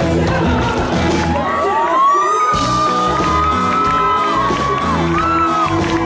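Live band music with a male lead vocalist singing a long note that rises and then holds, while the crowd cheers. The bass and drums drop out briefly about two seconds in.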